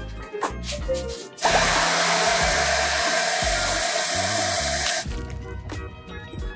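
Handheld hair dryer blowing for about three and a half seconds, a steady rush of air with one steady note in it. It starts and cuts off abruptly.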